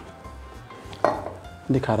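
A single sharp clink of kitchenware, a utensil or pan knocking, about a second in, fading quickly. A voice starts near the end.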